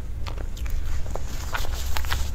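Close-miked wet chewing and mouth clicks as soft cream cake is eaten, the clicks coming irregularly over a steady low rumble.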